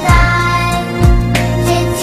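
Instrumental music from a song: sustained chords over a bass line, with a low drum hit about once a second.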